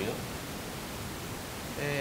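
Steady hiss of background noise through the studio microphones in a pause between sentences. Near the end, a man's drawn-out hesitant "eh" begins.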